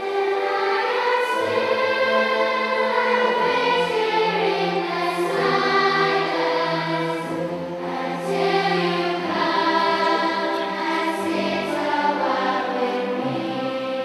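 A large children's and youth choir singing in held, flowing phrases, accompanied by a full orchestra with strings carrying a low bass line.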